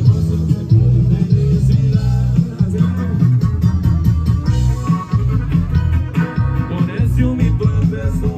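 Loud amplified band music with a heavy bass line and a continuous beat, heard from within the crowd.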